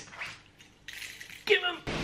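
A man's short vocal sound, then an abrupt cut to a steady background hiss.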